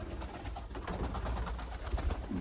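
Dönek (Turkish roller) pigeons cooing softly over a low, steady rumble.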